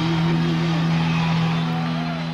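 Live rock band holding its closing chord: a steady low note with a wavering note above it that stops about a second in, the chord beginning to fade near the end.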